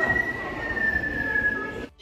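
A recorded animal call played over loudspeakers: one long, high screech that slowly falls in pitch over a low rumble, cut off suddenly near the end.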